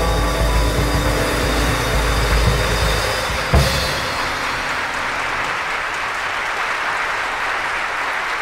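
A live jazz band (trumpet, tenor saxophone, piano, bass and drums) plays to a close, ending on a sharp final accent about three and a half seconds in. Steady audience applause follows.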